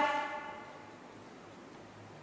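A woman's voice ends on a held word whose pitch rings on and fades away over about the first half second, then only faint steady room noise with a low hum.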